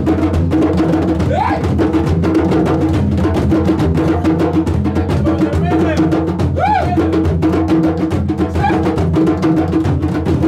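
A group of djembe hand drums and a large stick-beaten drum playing together in a steady, continuous rhythm.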